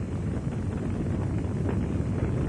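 A house fire burning, heard as a steady low rushing noise with no distinct pops or tones.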